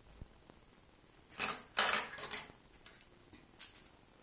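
Short bursts of rustling and scraping as hair is combed and handled while setting rollers: two close together a little past one and a half seconds in, the loudest, and a smaller one near the end.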